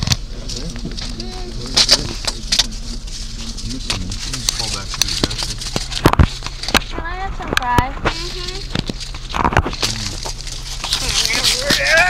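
Steady low engine and road hum inside a car cabin, with scattered clicks and rustling from things being handled, and brief voices.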